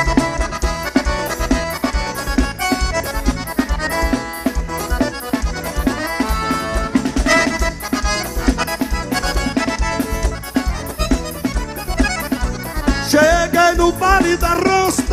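Forró band playing an instrumental passage: accordion melody over a steady drum beat.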